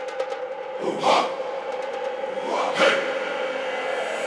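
Breakdown of a progressive psytrance track: no kick or bass, a held synth tone under filtered noise sweeps that swell and fade about every two seconds, with short clusters of clicky high percussion.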